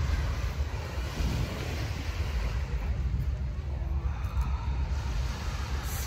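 Wind rumbling on the microphone at the seashore, with the wash of waves behind it.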